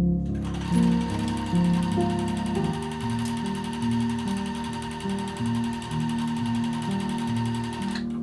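Domestic sewing machine running steadily, stitching a seam in cotton shirt fabric, starting about half a second in, with background music underneath.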